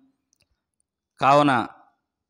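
Silence for just over a second, then a man's voice speaking one short word in Telugu.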